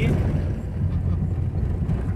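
Car driving on a dirt road, heard from inside the cabin: a steady low rumble of engine and tyres on the unpaved surface.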